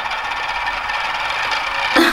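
Cap of a small squeeze bottle of hand gel being squeezed, giving a steady rattling buzz as the gel is pushed through it.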